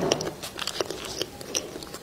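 Close-miked eating: a bite right at the start, then chewing with many small crunchy clicks.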